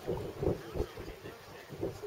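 Wind buffeting the camera microphone in irregular low gusts.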